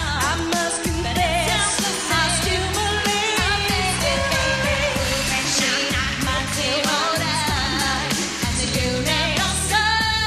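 Pop song with a lead vocal sung with vibrato over a steady, regular drum beat.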